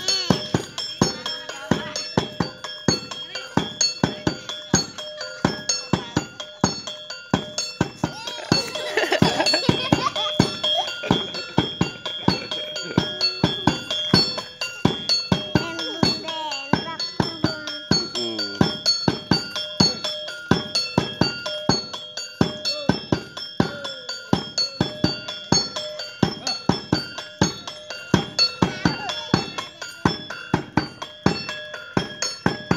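Live street-show percussion: a hand drum and ringing metal percussion beaten together in a steady, even rhythm. A person's voice calls out over it in the middle.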